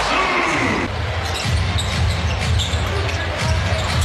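Basketball game sound in an arena: steady crowd noise, with a ball bouncing on the hardwood court now and then.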